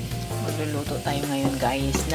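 Chopped ginger sizzling in hot oil in a nonstick pan while a wooden spatula stirs it, under background music.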